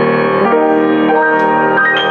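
Boston GP-156 acoustic baby grand piano being played: full chords ring on while new notes enter about every half second, the last near the end.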